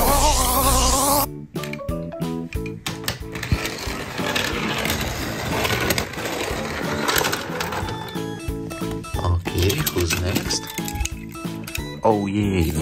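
A cartoon electric zap with a wavering cry for about the first second. Then comes dense, irregular clicking and rattling of a die-cast toy car on a plastic playset, over background music.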